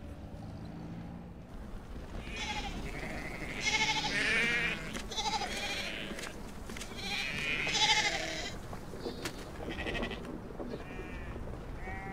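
A flock of goats bleating, many wavering calls overlapping from about two seconds in. Before that, a low steady rumble of a vehicle engine.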